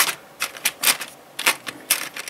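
Loose Lego bricks clicking and clattering in a small plastic storage drawer as a hand handles them: an irregular string of sharp clicks.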